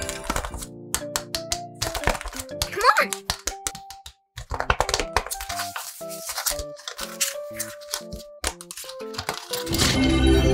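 Paper crinkling and rustling in short sharp clicks as a handmade paper blind bag is handled and pulled open, over background music with a simple stepped melody.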